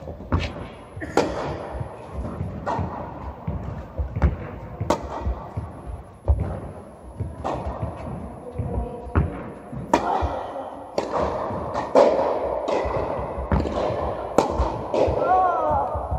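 Tennis rally in an indoor tennis hall: a string of sharp racket strikes and ball bounces, roughly a second apart, echoing off the hall.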